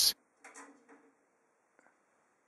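Faint, brief metal handling sounds of a thumbscrew being turned out of the back of a PC case, with a tiny click near the end.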